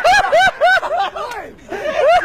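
A man laughing hard in a quick run of pitched 'ha' pulses, about four a second, with a brief break a little after halfway.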